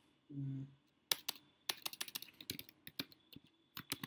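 Typing on a computer keyboard while entering code: an irregular run of quick key clicks that starts about a second in.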